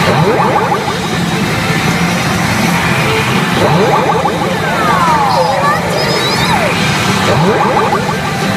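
Pachinko machine's feature-effect audio: music with three rising whooshes, one every three and a half seconds or so, and several falling whistles in the middle, over a machine voice.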